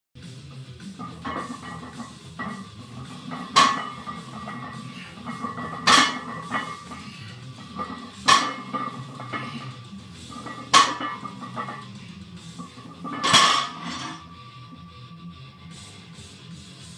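A 250-pound loaded barbell set down on the floor after each deadlift rep: five metallic clanks of iron plates, about every two and a half seconds.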